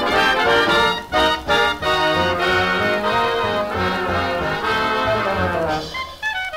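A 1938 swing dance orchestra on a 78 rpm record plays an instrumental passage, with brass holding full chords and no vocal.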